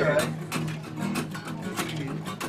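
Acoustic guitar strummed in a steady rhythm, about four strokes a second over a sustained low note, with a man's voice finishing a word at the very start.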